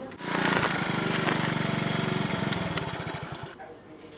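Small Honda motor scooter engine running as the scooter rides up, with a fast, even firing beat that slows in its last second before the sound stops suddenly about three and a half seconds in.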